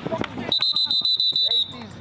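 Referee's pea whistle blown once: a shrill, fluttering tone a little over a second long that cuts off sharply, signalling the end of the play.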